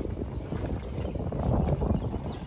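Wind buffeting the microphone of a moving bicycle rider, a rough low rumble broken by many small knocks, growing louder near the end.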